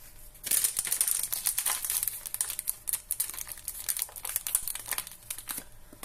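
A spice packet crinkling as it is handled and shaken out over a bowl, a dense run of crackles starting about half a second in and lasting about five seconds.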